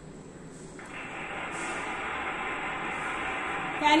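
A sound effect added to a PowerPoint slide, played from the computer's speakers as the slideshow runs: a steady, noisy hiss that starts about a second in and grows a little louder.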